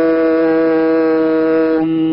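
A man chanting a long, steady 'Om', held on one pitch. The vowel shifts slightly near the end.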